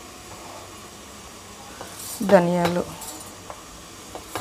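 Coriander seeds and other dry spices tipped from a plate into a steel mixer-grinder jar, with light rattling and a few small clicks against the metal over a steady low hiss. A short spoken word comes about two seconds in.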